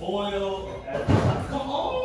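Voices off-camera, then a door slams shut about a second in.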